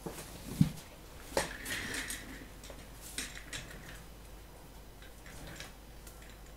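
A short low thump about half a second in, then a sharper click and scattered light clicks, clinks and rustling as a person moves over to a workbench and handles things on it, dying down near the end.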